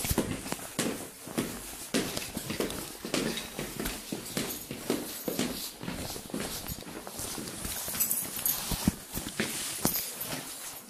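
Footsteps of two people going down stairs and walking across a hard floor: irregular knocks, a couple a second.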